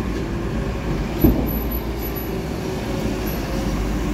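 Diesel engines running steadily: a city bus passing close and a backhoe loader at roadworks, with one thump a little over a second in.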